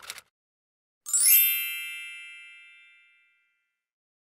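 Typewriter sound effect: the last few keystroke clicks right at the start, then about a second in a single bright typewriter bell ding that rings and fades away over about two seconds.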